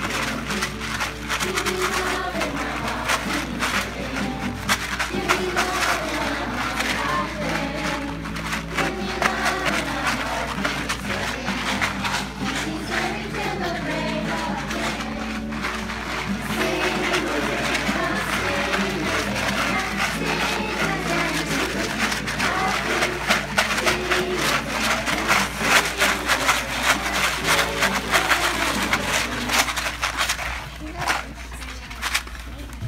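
A group of children singing a song to acoustic guitar, with handmade paper-plate tambourines shaken throughout.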